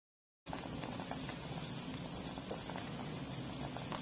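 Laboratory gas burner flame running with a steady hiss and low rumble under a paper cup of water being heated toward a boil, with a few faint ticks. It starts abruptly about half a second in.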